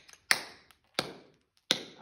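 Tap shoes striking a hard floor: three sharp, evenly spaced taps about two-thirds of a second apart. They are the toe and heel drops of a cramp roll done slowly.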